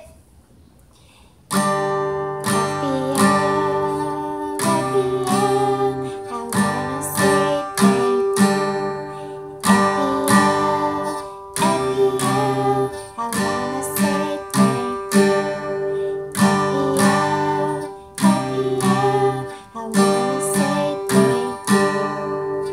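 Acoustic guitar strummed in a repeating chord pattern, starting about a second and a half in after a short pause.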